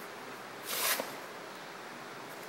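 Handling noise from disassembling a small metal rotary table: one short scrape about three-quarters of a second in, over quiet room tone.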